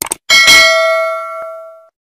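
Subscribe-button animation sound effect: a quick double click, then a bright bell ding that rings out and fades over about a second and a half.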